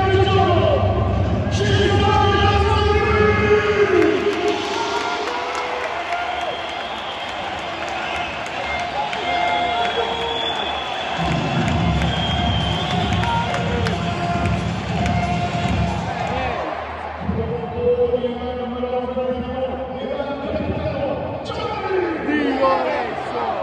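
Music with singing echoing around a football stadium, over steady crowd noise from the stands.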